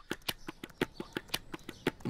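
Typing on a laptop keyboard: a quick, irregular run of key clicks, several a second.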